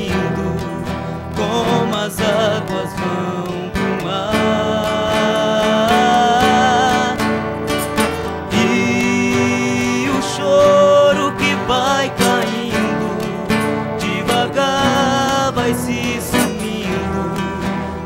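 Sertanejo duet: two young male voices singing together, accompanied by two acoustic guitars.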